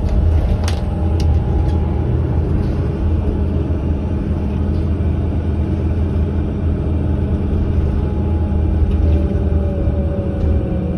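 Cabin sound of a 2008 New Flyer C40LF transit bus driving at low speed: a steady low rumble from its Cummins Westport ISL G natural-gas engine and running gear, with a few light clicks about a second in. A faint whine falls slightly in pitch near the end.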